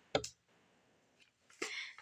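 Clicks from a Nikon D3500 DSLR being handled: one sharp click just after the start, a faint tick about halfway, and a softer, rustling click near the end.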